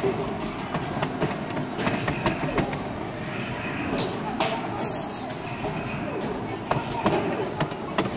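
Busy indoor arcade ambience: background chatter of people and the sounds of game machines, with many scattered sharp clicks and knocks and a short hiss about five seconds in.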